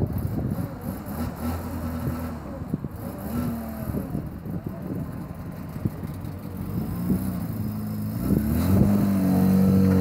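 Classic car engines running; about eight seconds in one engine note rises as it revs and then holds a louder, steady note.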